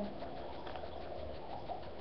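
Steady background noise with no distinct event: room tone and microphone hiss.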